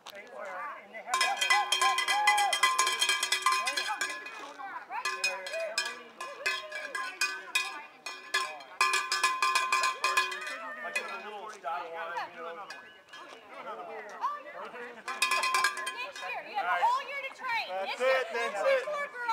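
A metal hand bell, cowbell-like, shaken fast in several ringing bursts, with people talking in between.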